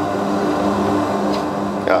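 Underground roof-bolting machine in a coal mine running with a steady mechanical hum.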